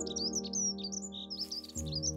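Small birds chirping in quick, high notes over background music of sustained chords that change near the end.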